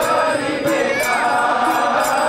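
Kirtan: voices chanting a devotional melody over a hand-played mridanga, the two-headed clay drum of Bengali kirtan, with bright strikes keeping a steady beat.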